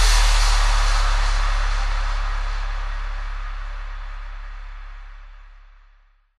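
Closing tail of an electro house track: a held deep bass note under a wash of hiss, both fading away steadily to silence.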